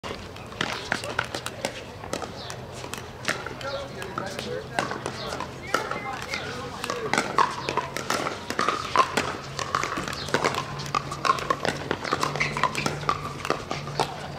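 Pickleball paddles hitting a hard plastic ball: a steady stream of sharp pops from rallies on several courts, over the chatter of players' and bystanders' voices.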